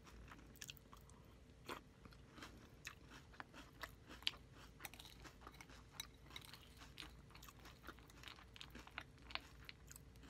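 Close-up chewing of a mouthful of crunchy Fruity Pebbles cereal in milk: soft, irregular crunches, several a second.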